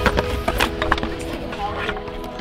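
A utility knife cutting through a foam surfboard, giving irregular short crackling clicks, under background music with steady held tones.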